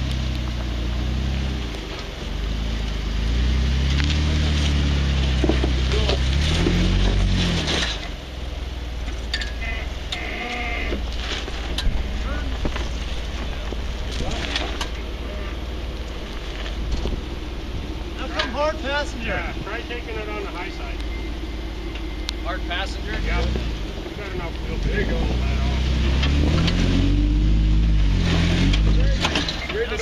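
Four-door Jeep Wrangler JK engine revving in bursts, its pitch rising and falling, as the Jeep crawls under load up a steep rock ledge. The revving eases off for a stretch in the middle and picks up again near the end.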